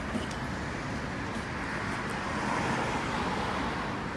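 Steady road traffic noise from a city street, swelling a little about halfway through.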